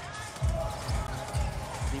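Arena music with a steady low thumping beat, about four beats a second, that starts about half a second in.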